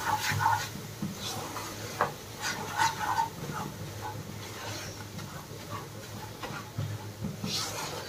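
Silicone spatula stirring and scraping a thick besan-and-ghee mixture in a nonstick kadhai while it is roasted: soft, irregular scrapes over a low steady hum.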